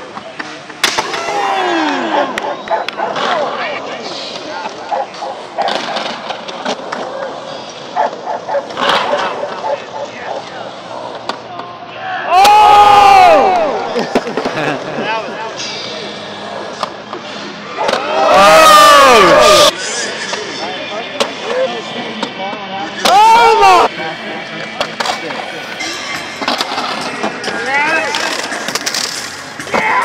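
Skateboard wheels rolling and carving on a concrete bowl, with sharp clacks and slaps of boards on the concrete. Loud voices yell out three times, about twelve, eighteen and twenty-three seconds in.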